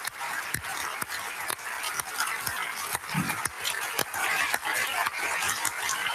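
Large audience applauding, a dense, steady clatter of many hands clapping.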